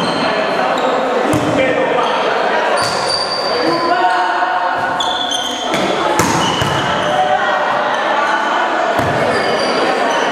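Volleyball rally in a large, echoing gym: the ball is struck by hands several times, irregularly, over steady chatter of young people's voices.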